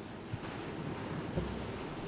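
Steady hiss of courtroom room tone picked up by an open microphone, with a faint low thud about a second and a half in.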